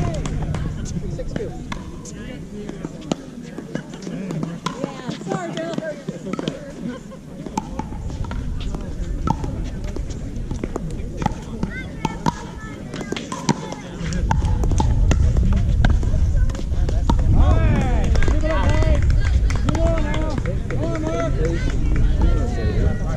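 Pickleball paddles popping against the plastic ball during a doubles rally: sharp hits at irregular intervals. A low rumble swells in about two thirds of the way through.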